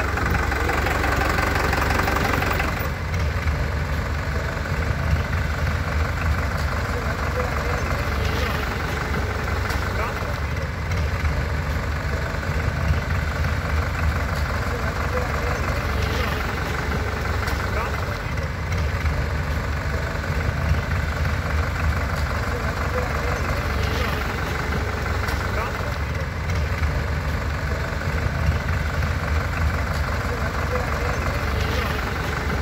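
Farm tractors' diesel engines running at low revs in a convoy, a steady low rumble, with indistinct voices mixed in.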